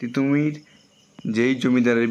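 A man's voice speaking in short drawn-out phrases, with a faint high pulsing chirp in the pauses between them.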